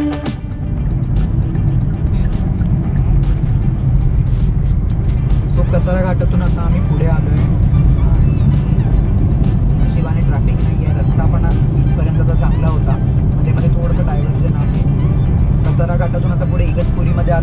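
Road and engine noise heard inside a moving Hyundai car's cabin: a steady low rumble, with music playing and a voice now and then.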